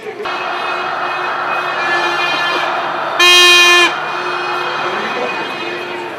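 A horn sounding a steady, held pitched tone over the noise of a large crowd. A much louder horn blast, lasting under a second, comes a little over three seconds in.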